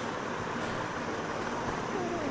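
Steady background noise in a room, a low even hum with no distinct event.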